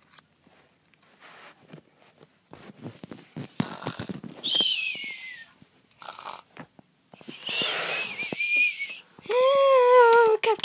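Clicks and rustles of plastic toy pieces being handled, then two breathy, high whistling sounds, the first sliding down in pitch and the second held fairly level.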